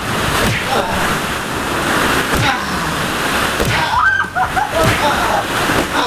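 Dense clattering rustle of many plastic ball-pit balls being churned as people move through a deep ball pit, with several dull thumps as a soft padded object is swung down into the balls. A shout or laugh breaks in about four seconds in.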